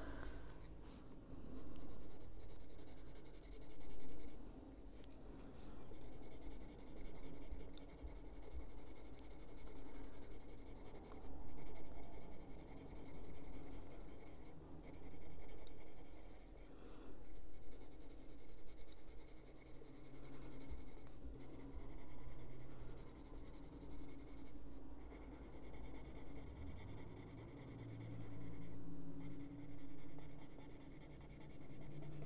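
Caran d'Ache Luminance coloured pencil in moss green shading on paper: steady scratchy strokes in short runs, with brief pauses every few seconds.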